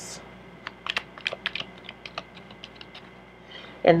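A tarot deck being shuffled by hand: an irregular run of quick card clicks and snaps.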